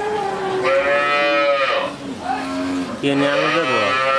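Dairy cow mooing: a long call about half a second in, then a second long call starting about three seconds in.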